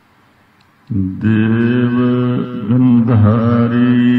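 After about a second of near quiet, Sikh Gurbani chanting starts abruptly: a voice holds long, sliding notes over a steady drone.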